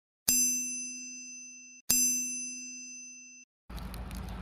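Two identical bell-like dings about a second and a half apart, each ringing with several clear pitches and fading before being cut off abruptly: an added intro chime sound effect. Outdoor background noise begins near the end.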